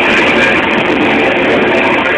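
Live rock band playing loudly with electric guitars, heard as a dense, continuous wall of sound.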